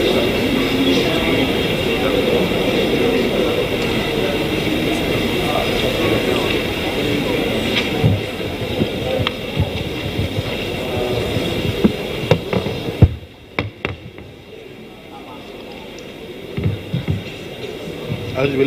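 Murmur of many voices in a hall with some music underneath, then a few sharp knocks and thumps about two-thirds of the way through as the podium microphone is handled, after which the sound drops to a quieter low hum.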